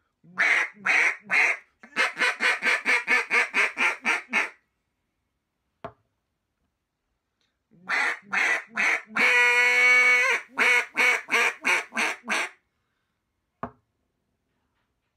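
RNT Daisy Cutter duck calls, in bocote and granadillo, blown in two runs of quacks. The first run is three spaced quacks and then a quick string of about ten short notes; after a pause with a faint click, the second is three quacks, one long held note lasting about a second, and another quick string, with a faint click near the end.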